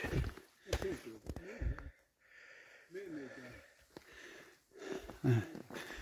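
Indistinct talk in a few short bursts with quiet gaps between, over footsteps on a dirt forest trail.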